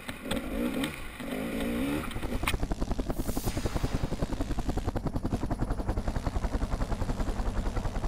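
Dirt bike engine revving unevenly for the first two seconds, then a steady, rapid, even throbbing of machine noise from about two and a half seconds in.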